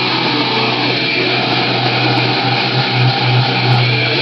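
Heavily distorted electric guitar playing a metal riff loudly, a low note held under a dense buzzing wall of distortion that swells a few times in the last two seconds.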